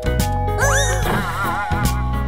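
Backing music of a children's song with a cartoon sound effect over it: a pitched wail that swoops up and down about half a second in, then wobbles in pitch for about a second.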